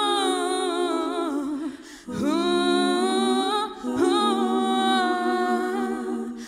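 A woman's solo voice singing unaccompanied into a microphone: long, wordless held notes with vibrato, in three phrases broken by short breaths about two seconds in and near four seconds.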